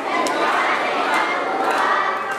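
Crowd of schoolchildren shouting and cheering together, a dense steady wash of many young voices.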